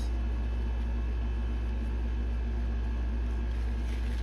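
A steady low electrical or mechanical hum with faint steady higher tones above it, running evenly with no breaks or other events.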